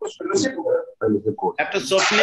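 Voices over a video call: short bits of talk and laughter.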